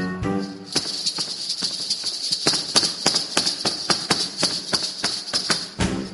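Ghungroo ankle bells jingling under quick rhythmic Kathak footwork: a run of sharp stamped strikes with a bright bell shimmer. A melodic instrumental phrase stops about half a second in and comes back near the end.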